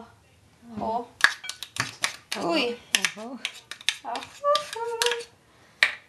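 A spoon clicking and tapping against a ceramic bowl and scoop while minced garlic is knocked into chopped salsa ingredients, a run of sharp clicks, mixed with short bits of voice.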